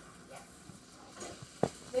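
A few light clicks and one sharp knock about one and a half seconds in: kitchen handling noise.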